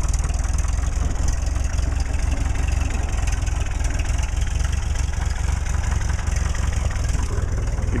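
Old farm tractor engine running steadily with a fast, even low putter, heard close up.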